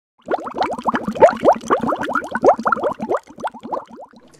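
Water bubbling: a rapid run of short bloops, each rising in pitch, starting a moment in and thinning out after about three seconds.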